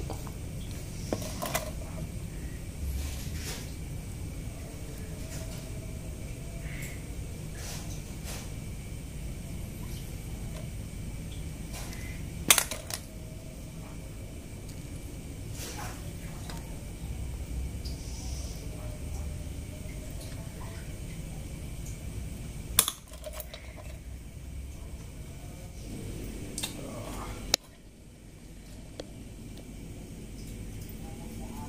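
Bamboo skewers clicking and tapping lightly as tempeh cubes are pushed onto them, with three sharper knocks spread through, over a steady low background hum.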